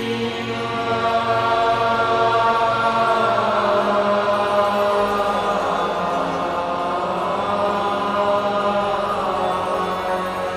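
Background music of long held notes, swelling in the middle and easing off near the end.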